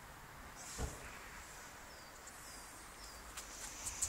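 Faint garden background hiss with a few short, high, falling bird chirps about two seconds in, and a soft low thump about a second in.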